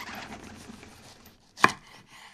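Foley sound effects: a dense run of small crackles that fades away over the first second and a half, then one sharp knock about a second and a half in.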